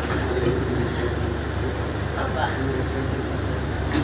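Steady low background hum, with a couple of brief faint snatches of speech.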